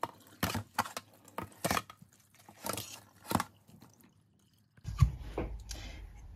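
Scattered short knocks and taps of vegetables being handled in a stainless steel colander, several in the first half. A low steady hum comes in near the end.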